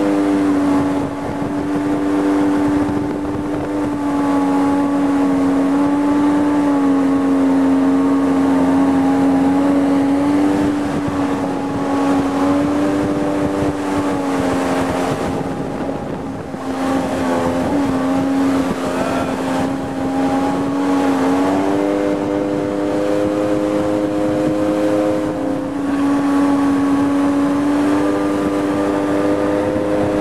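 Watercraft engine running steadily at speed, one sustained note that eases off and picks back up a few times.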